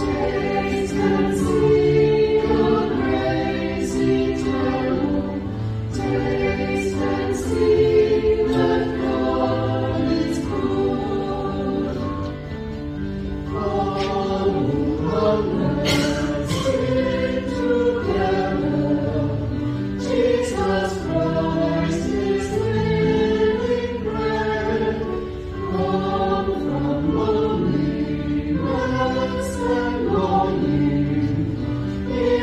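Church choir singing in parts, with sustained, continuous sung notes throughout.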